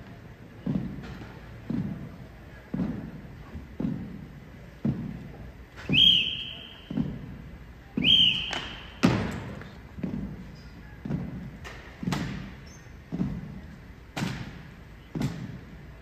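Drill team cadets marching in step on a hardwood basketball court, stamping their heels about once a second, each stamp trailing off in the hall's echo. Two brief high squeaks come near the middle.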